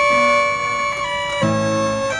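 Mills Violano-Virtuoso, an automatic violin-and-piano machine, playing a tune. Its mechanically bowed violin holds a long reedy note that steps in pitch about a second in, and piano chords come in underneath about one and a half seconds in.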